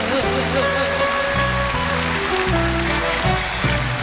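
Live band accompaniment of a Shōwa-era kayō ballad: a wavering sung note ends right at the start, then an instrumental passage with a bass line stepping through notes under held chords.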